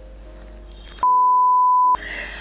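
A steady, high-pitched beep tone dubbed over the audio, starting abruptly about halfway through and cutting off just under a second later, with all other sound blanked beneath it: a censor bleep covering a spoken word. Before it there is only faint background sound.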